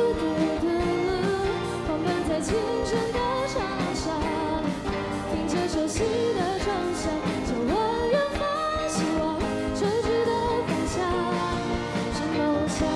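A girl singing a Mandarin pop-rock song live into a microphone, backed by a student band of guitars and drums.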